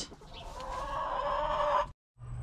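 Hen clucking in a drawn-out call of more than a second, starting about half a second in and cut off abruptly near the end.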